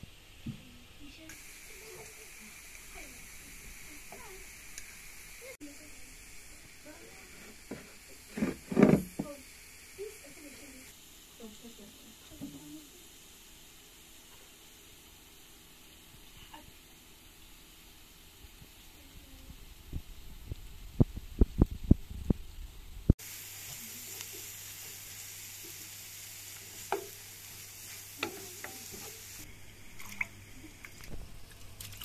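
Chopped greens sizzling in a frying pan and being stirred with a wooden spatula, broken by a loud knock about nine seconds in and a quick run of sharp clicks later on.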